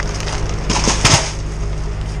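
Shrink-wrapped cardboard boxes on a pallet being pushed into place by a gloved hand: a short rustling, scraping burst about a second in, over a steady low hum.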